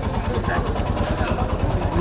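Motorcycle engine idling with a steady, fast low pulse.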